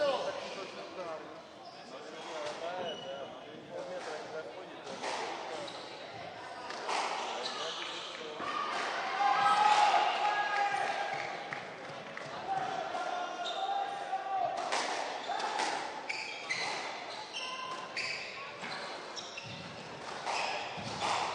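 Squash ball being struck by rackets and hitting the court walls in an irregular rally rhythm, echoing in a large hall, with voices in the background.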